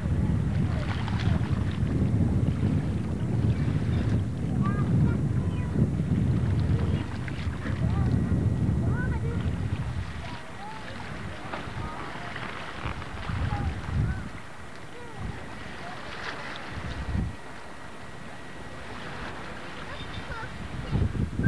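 Wind buffeting the camcorder microphone as a rough low rumble, heavy for about the first ten seconds, then dropping and returning in short gusts. Faint short chirps sound over it throughout.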